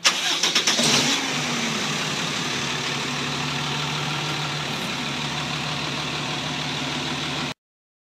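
Step-van food truck's engine cranking rapidly for about a second, catching with a brief rev that falls away, then settling into a steady idle. The sound cuts off suddenly near the end.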